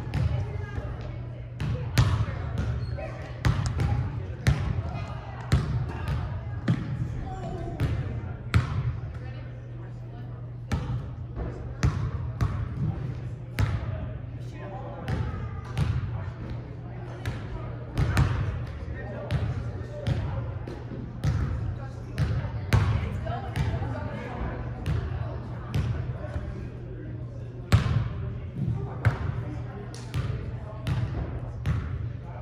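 Basketballs bouncing on a hardwood gym floor: sharp thuds coming several times a second at an uneven rhythm, over background voices and a steady low hum.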